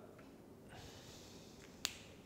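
Near quiet, with a faint rustle, then a single sharp click of a marker being handled near the end.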